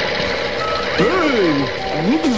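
Cartoon sound effects: a steady mechanical whirring and clatter over background music, with two short rising-then-falling pitched glides, one about a second in and one at the end.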